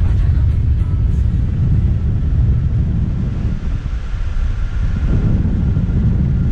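Wind rushing over the microphone of a camera mounted on a hang glider in flight: a loud, steady low rumble of buffeting air.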